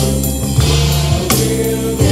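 Christian worship song with choir singing over a full band, with drums played along on an electronic drum kit. Cymbal crashes land right at the start and again about a second and a half in.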